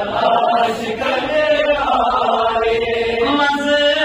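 A man's voice chanting a Kashmiri naat, a devotional poem in praise of the Prophet, into a microphone in long, held, wavering notes.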